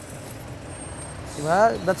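Steady street traffic noise, a motor vehicle running nearby, with a brief high hiss about a second and a half in. A man's voice starts near the end.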